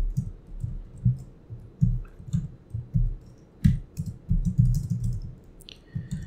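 Typing on a computer keyboard: irregular keystrokes a few per second, with one heavier stroke about three and a half seconds in.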